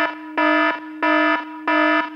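Electronic alarm buzzer sound effect: a steady, buzzy low tone that swells louder and drops back about one and a half times a second.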